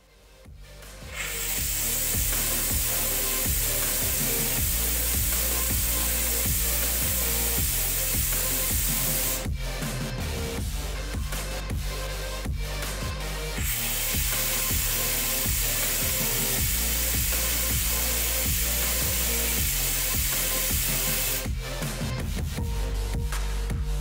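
Electronic background music with a steady beat, over the steady hiss of compressed air at about 4 bar driving a small 3D-printed air turbine and propeller. The hiss runs for about eight seconds, stops for a few seconds, then returns for another eight seconds as the next turbine is run.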